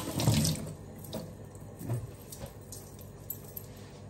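Kitchen tap running into the sink, turned off about half a second in. A few light knocks follow.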